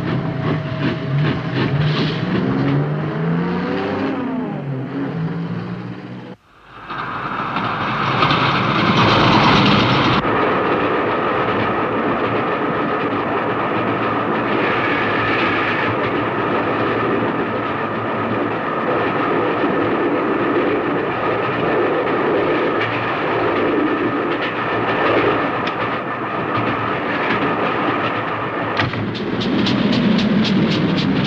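Steam train on the rails: rapid rhythmic beats as it pulls away, broken off suddenly about six seconds in, then the steady rattle and clatter of the carriages running at speed. Fast regular beats return near the end.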